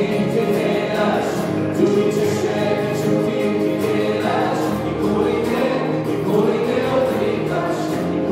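Small worship band performing live: several voices singing together over acoustic guitars and an electric keyboard.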